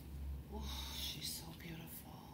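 A soft, whispered voice, with its words unclear, about half a second in and again briefly near the end.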